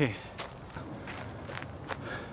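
Footsteps on a gravel path: a few separate steps, each a short, sharp crunch.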